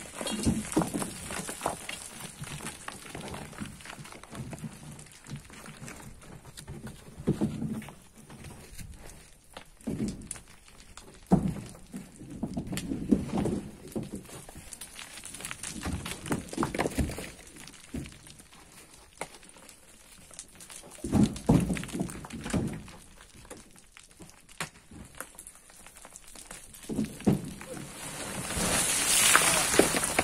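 Scattered thuds and scrapes of a long pole prying at a loose soil cliff face, then near the end a rushing slide of earth and stones as part of the cut face collapses.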